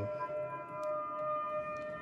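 Buchla 200 modular synthesizer sounding a steady drone of several held tones at once.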